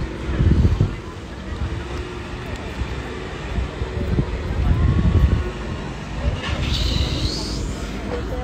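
Street noise with a vehicle's engine and low rumbles, background voices, and a brief high-pitched curving sound near the end.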